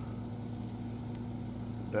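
A steady low machine hum, one even tone with an overtone and no change in pitch, with a few faint ticks over it.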